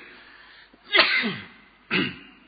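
A man sneezes once about a second in, a noisy burst that drops in pitch, then gives a second short, sharp burst near the end.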